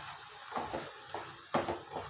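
Wooden spatula scraping and knocking against a nonstick kadai while stirring mutton in masala, a few separate strokes with the loudest about one and a half seconds in, over a faint sizzle from the hot pan.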